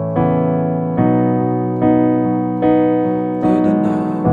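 Chords played on an electronic keyboard with a piano sound: a plain accompaniment of a song in held chords, a new chord struck a little under a second apart, five in all.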